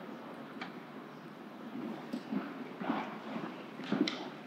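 Faint room noise in a large hall, with a few soft, scattered knocks and shuffles.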